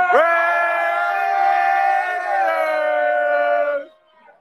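Men yelling a long drawn-out 'Raiders!' through cupped hands, one held shout of nearly four seconds that dips slightly in pitch near the end before cutting off.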